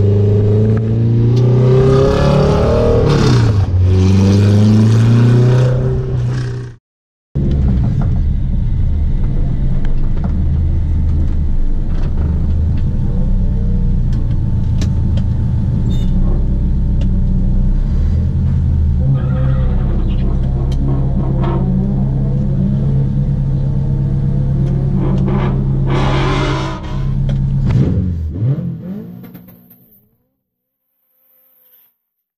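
Honda CRX's swapped H22 four-cylinder engine running, heard from inside the cabin: the revs rise and fall over the first few seconds, then after a brief dropout near seven seconds it holds a steady note with a couple of small rises, fading out near the end.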